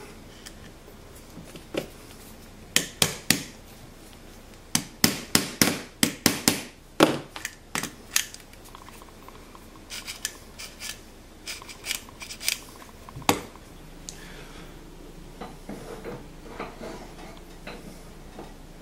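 Sharp taps and clicks of wood and metal as a small wooden foot is tapped onto the plunger of a dial indicator mounted in a wooden gauge, with a quick run of taps in the middle and softer handling knocks later.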